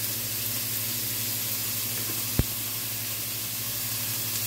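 Cubed beef frying in oil in a skillet with a steady sizzle. A single sharp knock comes a little past halfway.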